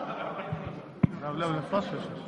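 A single sharp thump about halfway through, preceded by two softer low knocks, with a man's voice speaking faintly around it.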